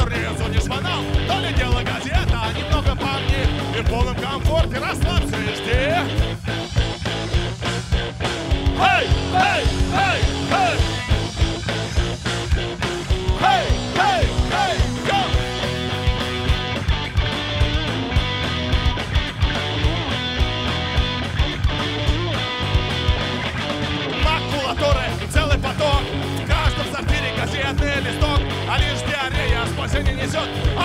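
Live rock band playing: electric guitars, bass and a drum kit keeping a steady beat, loud and dense, with guitar bends standing out here and there.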